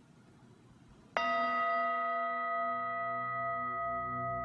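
A bell, in the manner of a singing bowl, is struck once about a second in and rings on steadily with many clear overtones, opening the mantra music. A low hum swells in beneath the ring toward the end.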